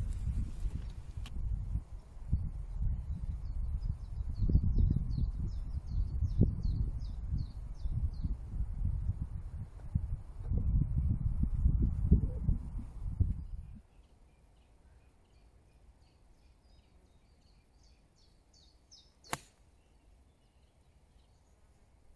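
Wind buffeting the microphone in gusts, a low rumble that cuts off suddenly about 14 seconds in, with faint chirping birdsong above it and a single sharp click near the end.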